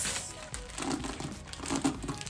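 Clear plastic packaging of a hairbrush crinkling as it is handled, over soft background music.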